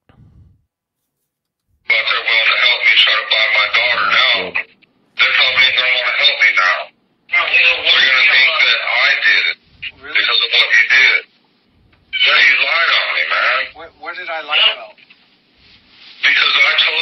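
Recorded telephone call being played back: a man's voice on the phone line, thin and narrow-sounding. It starts about two seconds in and runs in several stretches of talk with short pauses between.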